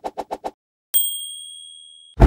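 Rapid, even scratching strokes, about seven or eight a second, stop about half a second in. About a second in, a bright bell ding rings and slowly fades away.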